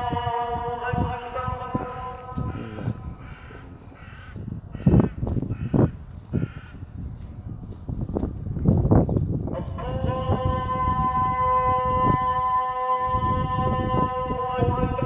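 The muezzin's voice on the mosque loudspeakers holds a long note of the dawn call to prayer (adhan) and stops about a second in. In the pause a crow caws several times, with a few thumps of handling or wind on the phone's microphone. Near ten seconds the muezzin begins the next phrase on another long held note.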